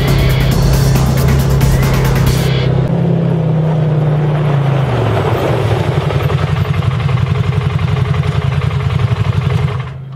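Arctic Cat Wildcat 1000's V-twin engine running under background music with a beat. About halfway through, the engine note falls and settles into an even pulsing, and the loud sound cuts off just before the end.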